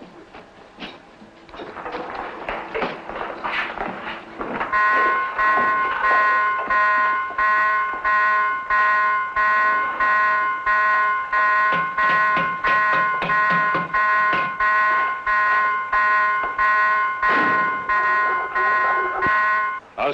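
Submarine general alarm sounding for battle stations: a pitched bong repeating about two times a second, starting about five seconds in and running until just before the end. Before it comes a few seconds of scuffling movement.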